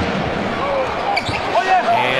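Live NBA game sound: steady arena crowd noise with a basketball bouncing on the hardwood court and a few short squeals.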